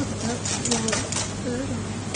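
Wire whisk beating a thick sauce in a stainless steel bowl, its wires clicking against the metal several times as sugar is stirred in to dissolve. A few short hums of a voice come in between the clicks.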